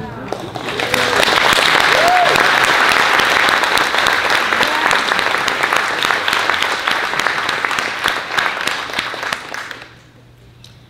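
Audience applauding, with a short whoop of cheering about two seconds in. The clapping swells within the first second or two and dies away near the end.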